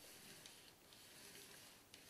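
Faint grinding of a 45 mm rotary cutter blade rolled along a sharpening stone, barely above room tone.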